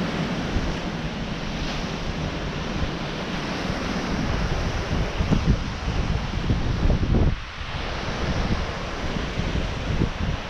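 Ocean surf breaking and washing on a sandy beach, a steady rushing hiss, with wind buffeting the microphone in low gusts that are strongest a little past the middle and drop away briefly just after.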